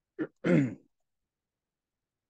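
A man clears his throat once, briefly, within the first second.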